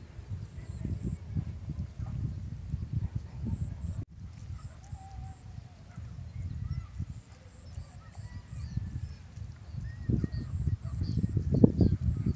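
Wind buffeting the microphone, an uneven low rumble that gusts harder near the end, with faint distant calls over it.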